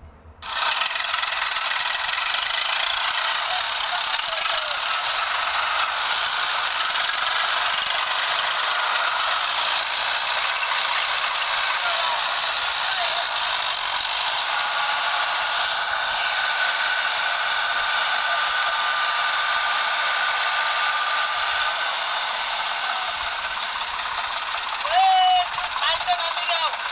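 Tractor diesel engines running hard under load, one tractor towing another that is stuck in deep mud on a rope. The noise is steady and thin, with little bass, and it starts suddenly about half a second in.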